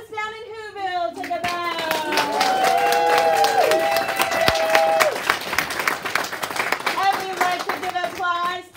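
Audience applauding, with voices calling and cheering over the clapping, including a few long held calls in the middle.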